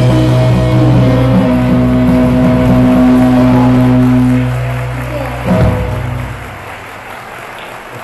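A live rock band ends a song, holding a final chord on guitars and bass. A last sharp hit comes about five and a half seconds in and rings out into the hall.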